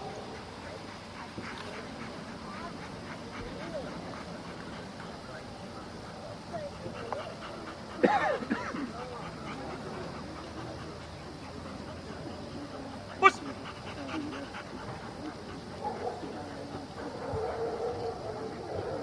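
A dog whining and yipping, with faint voices in the background. The loudest moments are a sharp pitched cry about eight seconds in and a brief sharp high one about thirteen seconds in.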